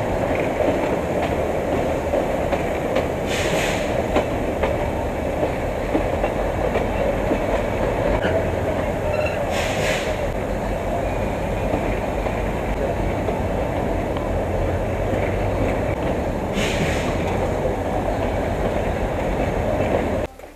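Matheran narrow-gauge toy train running, heard from aboard a coach: a steady rumble and clatter of wheels on the rails. Three short hissing bursts break through it, about every six to seven seconds.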